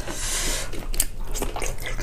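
Close-miked wet eating sounds of spicy sauce-soaked sea snails (whelks). A short wet rush of sound at the start is followed by scattered sticky, wet clicks from mouth and saucy fingers.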